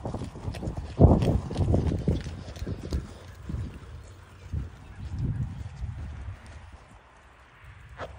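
Footsteps on grass and the thumps of a hand-held phone while walking, loudest about a second in, easing off and stopping near the end.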